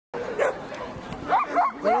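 A dog barking excitedly in short, high calls, several in quick succession in the second half.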